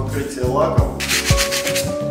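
Hand sanding of a cured microcement surface with sandpaper: quick scratchy rubbing strokes that start about a second in, over background music with a steady beat.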